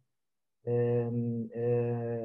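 A man's voice holding two long, level-pitched hesitation sounds, like a drawn-out "eeh", each just under a second, after about half a second of dead silence.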